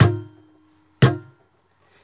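Steel-string acoustic guitar in C G D G A D tuning, struck twice about a second apart with downward right-hand strokes. Each stroke has a sharp, percussive attack and a short ring, the strings palm-muted near the bridge.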